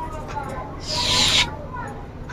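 Fingers rubbing through long hair during a hair massage, with one louder rustling swish lasting about half a second, about a second in.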